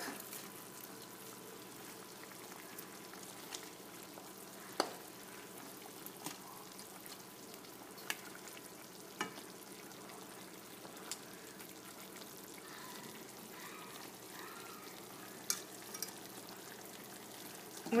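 Chicken pieces simmering in garlic and oil in a frying pan, giving a steady faint sizzle. Sharp clicks of a metal fork against the pan come every second or two as the pieces are turned.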